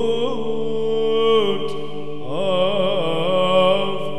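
Byzantine chant in the plagal first mode: a single voice sings an ornamented melody over a steady held drone (ison). The melody breaks off about a second and a half in and comes back just after two seconds, while the drone carries on.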